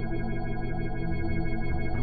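Experimental electronic drone music: many steady synthesizer tones stacked into one dense, sustained chord.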